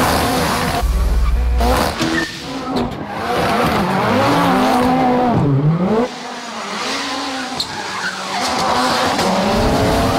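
Ford Fiesta rally car's turbocharged engine revving hard up and down as the car drifts, with its tyres skidding and squealing. There is a deep boom about a second in.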